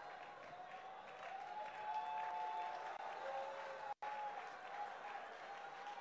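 Church congregation faintly clapping and praising during a praise break, with a few long held notes over the clapping. The sound cuts out for an instant about four seconds in.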